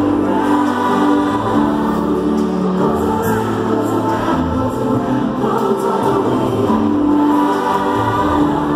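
Live pop concert music heard from the arena stands: a singer with acoustic guitar, with many voices singing together.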